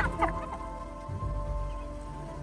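Spotted hyena giving a short high-pitched call that falls in pitch, at the very start, over background music with steady held tones and a low pulsing beat.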